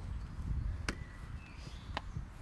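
Two sharp thuds of a football being struck, one about a second in and one at the end, over a steady low rumble.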